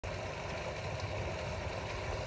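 Small stream running over stones, with water spilling from a drain pipe: a steady, even rush of flowing water.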